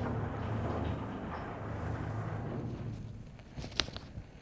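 Sliding lecture-hall blackboard panels rumbling low as they move, fading away over about three seconds, then a sharp tap of chalk on the board near the end.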